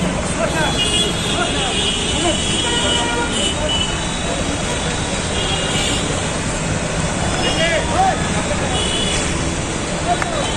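Busy road traffic with vehicle horns honking again and again, over the chatter and shouts of a crowd.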